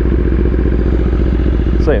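BMW S1000RR inline-four motorcycle engine idling steadily, heard from the rider's seat. A man's voice starts just before the end.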